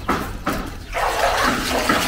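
Water streaming and splashing back into a tank off a submersible pump as it is hauled up out of the water, louder from about a second in.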